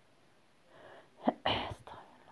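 A person sneezing once: a short breath in, then a sharp, loud burst of air.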